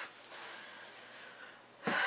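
A woman's soft, drawn-out breath out, fading over about a second and a half. Her voice starts again near the end.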